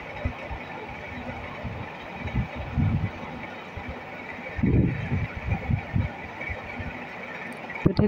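Pumpkin and shrimp curry simmering in an open pan: the thickening sauce bubbles with irregular low plops over a steady hiss, with a cluster of plops a little after two seconds in and again near the middle.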